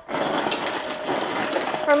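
Refrigerator door ice dispenser running on its crushed-ice setting, the motor crushing ice and dropping it out. It makes a steady grinding whir with a constant hum and starts abruptly.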